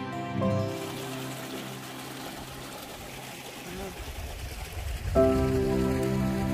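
Soft instrumental background music stops under a second in. It gives way to the even rush of water trickling through a small rock-lined garden stream, with a low rumble on the microphone from about four seconds in. The music starts again about five seconds in.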